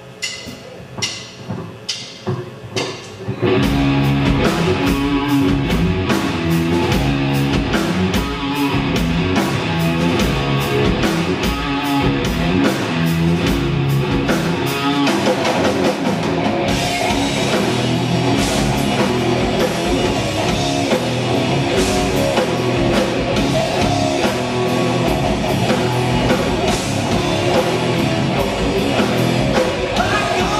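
Live hard rock band playing an instrumental intro on electric guitars, bass guitar and drum kit. A few spaced hits open it, then the full band comes in about three and a half seconds in with a steady beat, and the sound grows brighter with more cymbal about halfway through.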